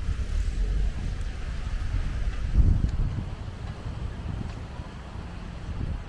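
Car traffic going around a roundabout, with wind buffeting the microphone as a low rumble that swells briefly about two and a half seconds in.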